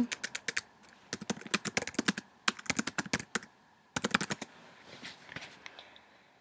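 Typing on a computer keyboard: quick runs of keystroke clicks for the first four and a half seconds, entering a search query, then only faint sounds near the end.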